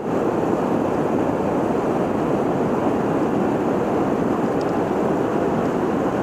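Steady rush of a fast, high-water river current churning into whitewater.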